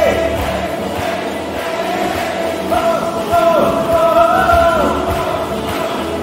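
Live worship song: a man singing a melody over acoustic guitar and accompaniment, with a second, higher voice line joining about three seconds in.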